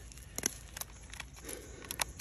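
Faint scattered clicks and a soft rustle: a person handling a phone camera while moving over leaf litter.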